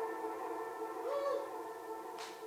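A live band's final chord ringing out and slowly fading, held steady tones with a short bending note about a second in.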